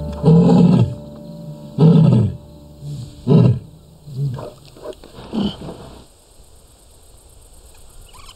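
A lioness roaring: three long, loud roars in the first four seconds, then a run of shorter grunts that fade away by about six seconds in.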